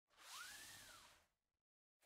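A faint whoosh sound effect: a soft hiss with a brief tone that rises and falls in pitch, fading away after about a second and a half.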